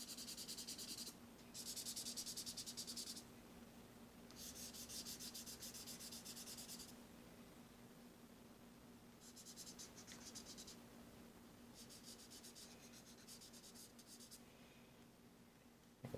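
Crayola washable marker scribbling quickly back and forth on sketchbook paper, coming in five bursts of one to three seconds with short pauses between.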